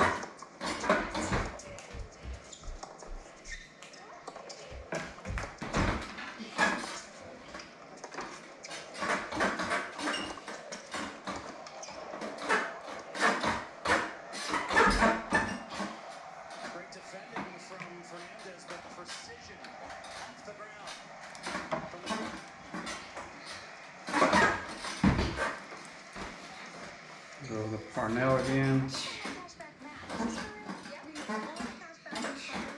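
Scattered clicks, taps and knocks of racquet-stringing work on a Pro's Pro Tomcat stringing machine, with string being handled and fittings on the machine knocked, over a faint voice in the background.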